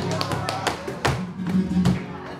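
Live flamenco alegría: palmas hand clapping and the dancer's shoe strikes on the wooden stage, sharp hits every few tenths of a second, over a flamenco guitar.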